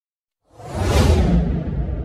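Logo-reveal sound effect: a whoosh that swells in after about half a second and peaks around a second in, over a deep rumble that then slowly fades away.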